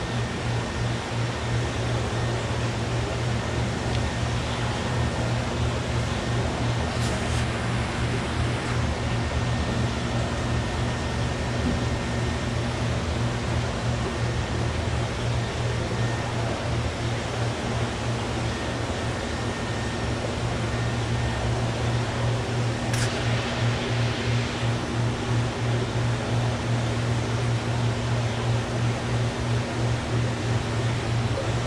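Steady low hum with a fainter hum above it and an even hiss: the drone of an aquarium store's air pumps and filters running. A light click sounds about a quarter of the way in, and another about three-quarters through.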